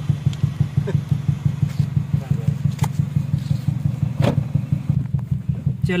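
Toyota Corolla E140 engine idling with a steady, low, evenly pulsing beat.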